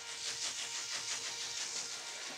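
Passing train: a steady, high rushing noise of the carriages rolling by on the rails.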